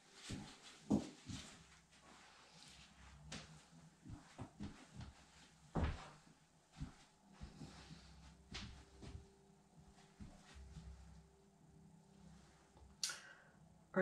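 Scattered light knocks and clicks of painting tools and containers being picked up and set down on a work table, the loudest about a second in and near six seconds in.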